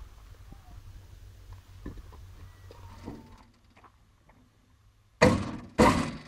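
Sheet-metal top enclosure panel of an MEP-802A generator being set down and pressed into place. A few faint taps come first, then near the end a run of loud metal bangs and rattles about half a second apart.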